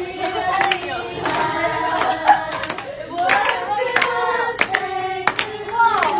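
A group of people singing together in a small room, with scattered hand claps.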